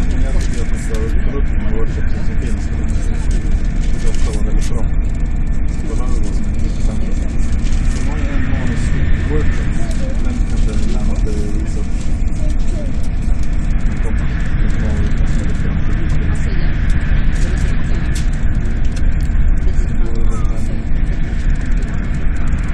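Steady loud rumble and running noise of a high-speed train travelling at speed, heard from inside the carriage.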